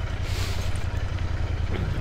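Motorcycle engine running steadily under way, with a short hiss about half a second in.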